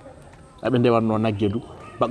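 A man's voice speaking in a drawn-out, sing-song way. It starts a little over half a second in, after a short pause.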